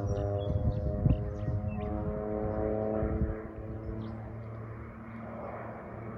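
Air Tractor AT-502B crop duster's Pratt & Whitney PT6A turboprop engine and propeller droning as the plane flies past. The tone drops slightly and the sound falls off after about three seconds as it draws away.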